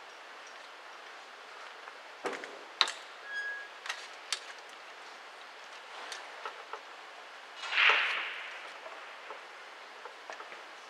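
Sharp clicks of pool balls and cue on a billiard table, the loudest a little under three seconds in, over a steady faint hiss. A short rushing noise swells and fades about eight seconds in.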